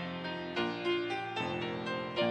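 Piano playing an unhurried instrumental piece, chords and melody notes struck about twice a second, each ringing on as it fades.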